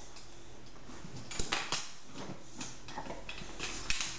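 Faint handling noise from a flexible measuring tape being drawn down along a braid of hair: a few soft scattered clicks and rustles over a quiet room hiss.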